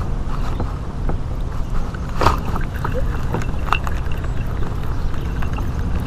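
Steady low rumble of wind buffeting the camera microphone, with scattered faint clicks and knocks from a spinning reel being cranked on a lure retrieve.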